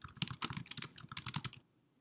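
Typing on a computer keyboard: a quick run of keystrokes, stopping about a second and a half in.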